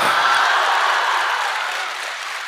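Large theatre audience applauding, the noise of many clapping hands swelling to a peak near the start and slowly dying away.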